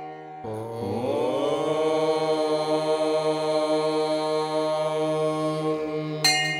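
Devotional chant music: over a steady low drone, a single long chanted note enters about half a second in, slides up in pitch over its first second, then holds steady.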